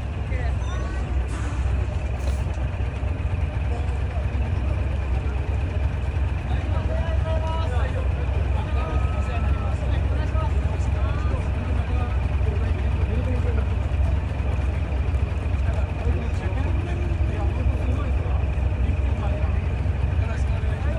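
Decorated heavy truck's diesel engine idling steadily, a deep even hum, with people talking around it.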